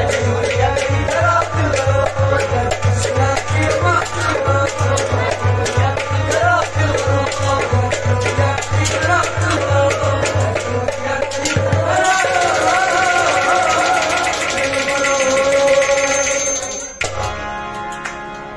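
Live Kashmiri folk song: a man singing into a microphone over a fast, even hand-percussion beat. About twelve seconds in, the beat drops out and a held closing note carries on over a dense high rattle, until the music stops suddenly near the end.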